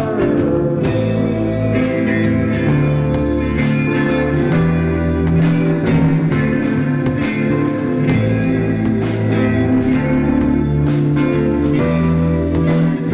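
Live rock band playing an instrumental passage: electric guitar, bass guitar, keyboard and drum kit, with steady drum hits under sustained bass notes.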